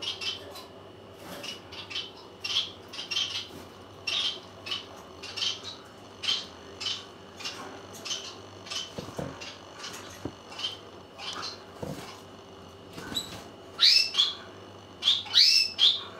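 A small bird chirping repeatedly: short high chirps at irregular intervals, with a few quick up-and-down whistled calls near the end. A faint steady hum runs underneath.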